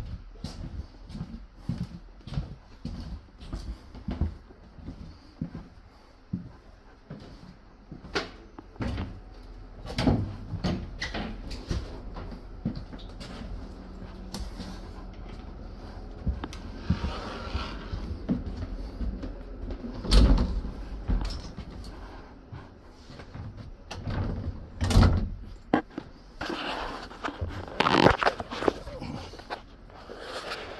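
Footsteps along a passenger train carriage's corridor, at about two steps a second at first, with knocks and bangs of the carriage doors; the loudest bangs come about 20 and 25 seconds in.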